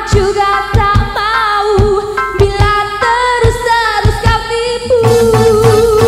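Live dangdut band music: a woman singing a wavering melody over electric guitars, keyboard and regular drum beats, with a long held note beginning about five seconds in.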